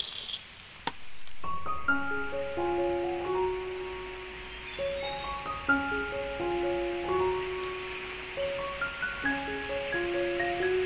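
A steady, high-pitched drone of forest insects, with background music entering about a second and a half in: a gentle melody of short pitched notes.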